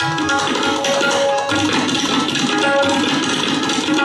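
Solo tabla played with rapid, dense strokes on the right-hand drum and deep bass strokes on the left-hand bayan, over a harmonium sustaining its accompanying melody.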